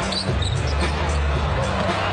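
Basketball arena game sound: crowd noise over arena music with a steady bass, and a basketball bouncing on the hardwood court.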